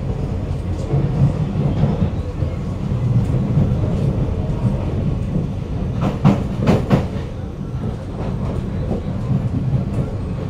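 Inside a Kawasaki-CRRC Sifang C151A metro carriage running between stations: a steady, loud low rumble of the moving train. About six seconds in come three or four sharp clicks in quick succession.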